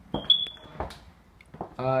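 A brief high-pitched tone lasting about half a second, with a few sharp knocks around it, then a man's short 'uh' near the end.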